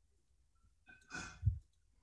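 A person's short breath or sigh close to an open microphone, ending in a soft low bump, over a faint hum from the live audio line.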